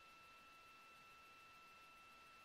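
Near silence: faint hiss with a thin, steady high-pitched tone.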